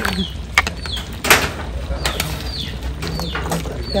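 A cleaver chopping through pork skin and bone on a cutting board: a few sharp separate blows, the heaviest about a second in. A bird chirps repeatedly with a short falling high note throughout.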